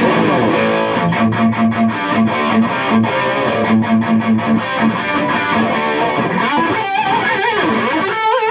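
Electric guitar played through a Fender Bassbreaker 15 tube amp head on its high-gain mode, gain at about three o'clock, into a Hiwatt cabinet: a distorted riff of fast picked notes. Near the end it moves into bent notes with vibrato.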